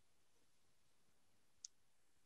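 Near silence between speakers, with one faint, short click near the end.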